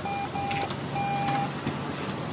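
ATM beeping at a steady pitch, four beeps of uneven length, as the cash is presented at the dispenser slot, with a couple of mechanical clicks about half a second in.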